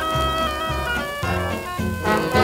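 A 1941 German dance-orchestra 78 rpm recording of an oriental foxtrot: long held notes from the orchestra over a bass line that changes note about every half second.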